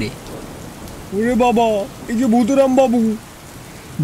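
Steady rain ambience, with a person's voice heard twice over it.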